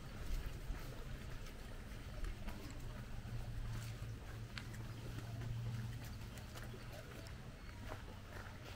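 Footsteps on a stony dirt road: irregular short crunching steps, over a low steady hum that swells in the middle.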